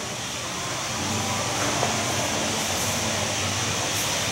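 Steady room tone: an even hiss with a faint low hum, unchanging throughout, with one tiny tick near the middle.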